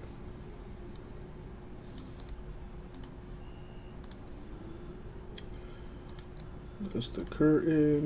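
Sparse clicks of a computer keyboard and mouse, a few keys at a time, over a low steady hum. A short burst of voice comes near the end and is the loudest sound.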